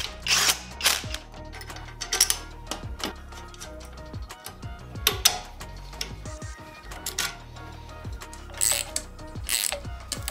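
Hand tools tightening bolts: a cordless driver briefly spinning a bolt in, then a ratchet wrench clicking in short bursts, over background music.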